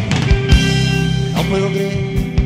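Live rock band playing an instrumental passage: electric guitar and bass over a drum kit, with steady kick-drum beats and a cymbal hit about one and a half seconds in.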